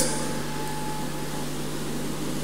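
Steady hum and hiss of a large, crowded hall's ambience and sound system, with the congregation faintly shifting as it sits down.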